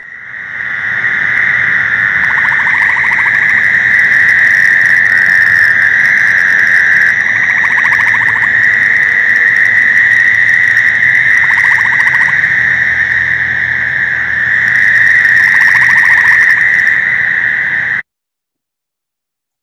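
Night breeding chorus of Fowler's toads, their buzzing calls merging into a continuous high drone. A gray tree frog's short pulsed trill cuts in about every four seconds, four times in all.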